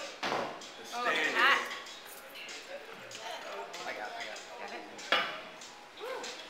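A person's voice with no clear words, with a sudden loud knock just after the start and another about five seconds in.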